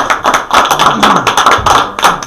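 A small group of people clapping their hands in applause, a dense run of overlapping claps.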